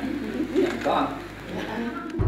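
Low, indistinct voices of a few people talking, with no clear words.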